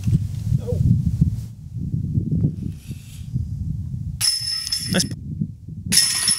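A disc golf disc striking the metal chains of a basket, the chains jingling and ringing for nearly a second, about four seconds in; a second chain hit starts near the end.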